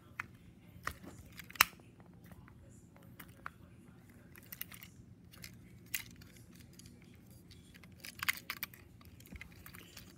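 Scattered small clicks and taps of a screwdriver and fingers on a plastic toy engine's battery cover as its screws are driven back in and the toy is handled, the sharpest click about one and a half seconds in.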